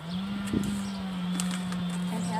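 A steady low motor drone that comes in at the start, rising slightly, with a couple of light scrapes from a hand trowel working soil in a planter.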